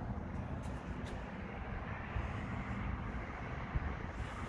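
The Nissan D21's 2.0-litre four-cylinder engine idling with a steady low rumble, with a few faint light clicks in the first second.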